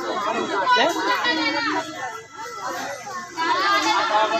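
A crowd of women and children chattering, several voices talking over one another, some of them high children's voices.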